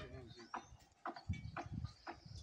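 Faint voices talking, broken by a few short, dull knocks.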